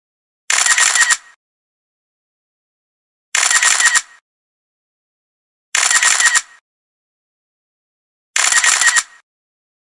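A camera shutter sound effect: the same short shutter burst, under a second long, repeated four times about every two and a half seconds.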